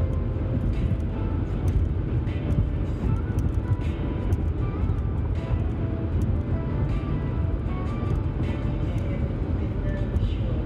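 Steady low road and engine rumble of a car cruising at highway speed, heard from inside the cabin, with music and a singing voice playing over it.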